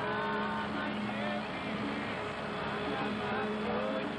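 Concrete pump truck's diesel engine running steadily while it pumps concrete through the boom hose.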